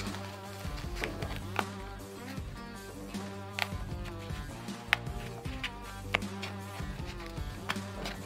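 Background music, with several sharp clicks and crackles at irregular moments as a blind rivet's stem is pushed through a dimpled metal-foil heat-shield sheet to punch holes for the anchors.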